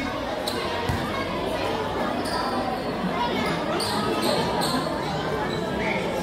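A basketball bouncing on a painted concrete court, with one clear thump about a second in, over steady crowd chatter.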